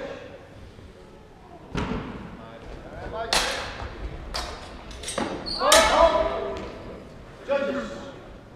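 Steel longswords clashing during a sparring exchange: a string of sharp metallic strikes, with footfalls thudding on a wooden hall floor. A short shout comes just before the loudest strikes, and another brief call near the end.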